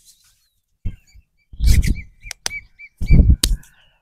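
Rough hand massage of a man's arm: two heavy bursts of rubbing and slapping, with a few sharp clicks between them. A small bird chirps a quick run of short, same-pitched notes in the background.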